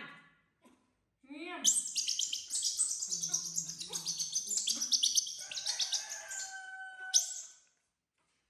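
Infant macaques calling: a few short rising-and-falling coos, then a long run of rapid, high-pitched squeaking chirps that stops shortly before the end.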